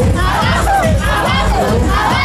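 Loud batucada-style party drumming with a heavy beat, and a crowd of dancers shouting and cheering over it.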